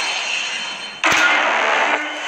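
Film sound effects with no speech: a noisy rush that fades out, then a sudden loud hit about a second in, followed by another sustained noisy rush.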